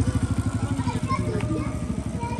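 Motorcycle engine running close by as it rides past, a rapid low pulsing that slowly fades as it moves away, with scattered voices of people around.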